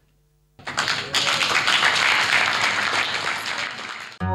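Audience applauding, a dense even clapping that starts abruptly about half a second in after a brief near-silence.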